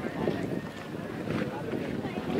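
Wind buffeting the microphone in uneven gusts, with faint voices of onlookers in the background.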